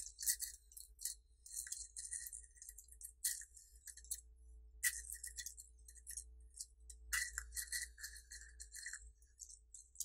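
Dry Taiping Houkui green tea leaves crackling and rustling as fingers stir and lift them, in irregular clusters of crisp, high-pitched rustles with short pauses between.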